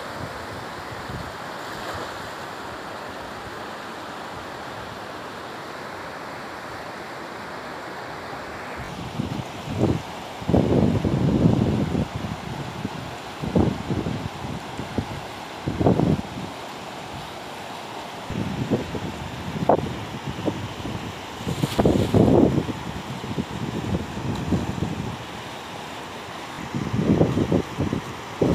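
Fast-flowing river rushing steadily over rocks. From about a third of the way in, irregular gusts of wind buffet the microphone in loud low bursts.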